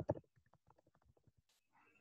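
Keys of a computer keyboard clicking rapidly as a search phrase is typed, a few louder clicks at the start, then faint, quick, uneven keystrokes.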